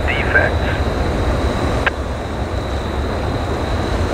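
Railroad defect detector's automated voice coming over a radio scanner, finishing its announcement in the first second and cut off by a single sharp click about two seconds in. A steady low rumble and a faint steady high tone run underneath.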